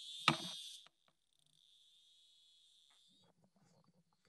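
Snap Circuits whistle chip (piezo) driven by the square wave of a 555 timer light-sensor circuit, giving a high-pitched ticking buzz. It drops to faint about a second in as the light sensor is covered, and stops a little after three seconds. A short knock sounds just after the start.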